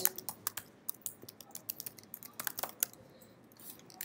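Keystrokes on a computer keyboard: faint, irregular runs of key clicks with short pauses between them, thinning out near the end.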